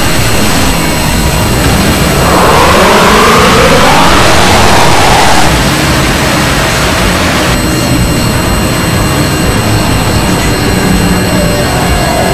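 A loud, unbroken cacophony of many screamer-video soundtracks playing over one another: distorted screaming, noise and music piled into a single roar. A wailing pitched sound rises and falls about two to five seconds in, and the mix shifts slightly around five and a half and seven and a half seconds.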